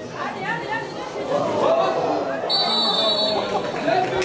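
Voices of players and onlookers call out and talk over each other. About halfway through, a referee's whistle sounds one long blast, held for more than a second.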